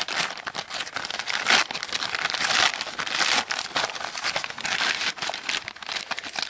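Plastic poly mailer bag crinkling and rustling as it is torn open and handled by hand, a continuous irregular crackle.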